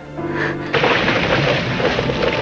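A short held tone, then about three-quarters of a second in a loud rushing noise sets in and runs on over music, a sound effect for a scene transition.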